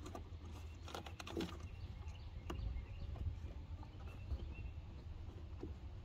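Faint handling sounds as a plastic wiring-harness connector is pushed onto a car's EVAP canister purge solenoid: a few small clicks and rubs over a low steady rumble.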